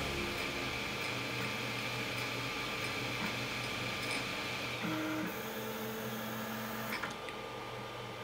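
FDM 3D printer running as it finishes a print: a steady whine from its stepper motors over the hum of its fans. About five seconds in the whine stops and the motor tones change as the print head moves off the part, there is a click near seven seconds, and after that mostly the steady fan noise is left.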